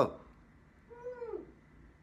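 A toddler's short, soft, high-pitched vocal sound about a second in, its pitch dropping at the end.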